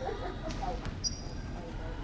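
A brief laugh, then a basketball slapping against hands and the hardwood floor in a short run of sharp knocks, with a short high sneaker squeak about a second in.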